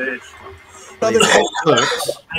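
A man's recorded speech from a sermon clip cuts in abruptly about a second in, loud and emphatic with a strongly rising and falling pitch, played back through the computer.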